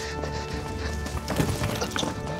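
Background music, with a quick clatter of knocks and thuds in the second half as a man carrying a sack of fruit collides with someone and falls to the floor.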